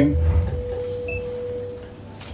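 Public-address system ringing with a single steady mid-pitched tone over a low hum, typical of light microphone feedback; the tone fades out near the end.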